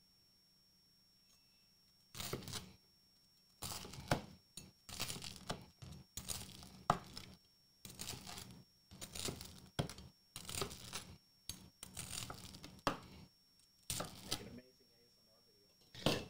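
A knife cutting through the crust of grilled Italian bread on a wooden cutting board: a string of crisp crunches, about one a second, starting about two seconds in and stopping shortly before the end.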